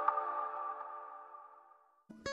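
The tail of an electronic intro music sting ringing out, a held synthesizer tone that fades away to silence in under two seconds.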